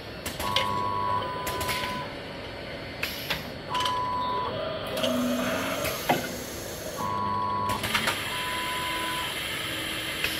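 Filling and capping monoblock running: sharp hisses of compressed air and clicks from its pneumatic valves over the clatter of the mechanism, with a steady high beep that sounds on and off four or five times.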